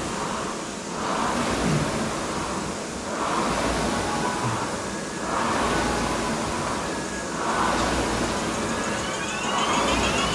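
Concept2 air-resistance rowing machine in use: its flywheel whooshes up with each pull and dies back on the recovery, about one stroke every two seconds, five strokes in all.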